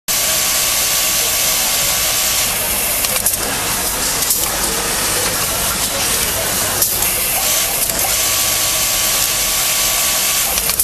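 Garment-factory machine noise: a steady, loud hiss from an automatic trouser-hemming sewing machine and the sewing machines around it. It breaks off briefly a few times, around three, four and seven seconds in.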